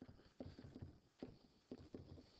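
Faint, irregular taps and light scrapes of a pen stylus on a digital writing surface as words are handwritten, a couple of knocks a second.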